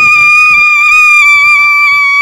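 A woman's long, high-pitched scream held on one steady pitch.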